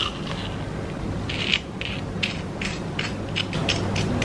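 Crisp fried batter crust of a beer-battered chicken nugget crackling as it is pulled apart and bitten: a run of sharp crackles starting about a second in and coming faster toward the end, over a low steady hum.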